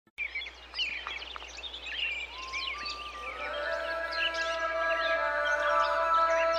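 Many birds chirping in quick, rapid calls. About two and a half seconds in, music comes in under them as sustained notes that stack up and grow louder.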